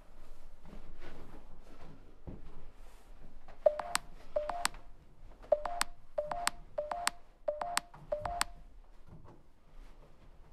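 Staircase treads creaking under footsteps going down the stairs: about seven short squeaks, each ending in a sharp click, roughly one every half-second to second, starting a few seconds in.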